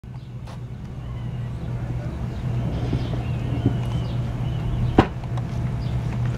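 Steady low hum with a rushing noise from a steam box venting steam while its boiler runs, for steam-bending boat frames; it fades in at the start, and a single sharp click comes about five seconds in.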